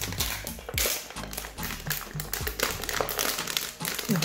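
Background music over the crinkling and clicking of a plastic water bottle being offered to and mouthed by a puppy.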